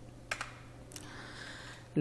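Two quick clicks about a third of a second in and another click about a second in, from working a computer keyboard and mouse, over a faint steady hum.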